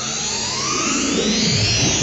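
Background music: a build-up of rising, swelling pitch sweeps, like a synthesizer riser in a rock track's intro, growing louder.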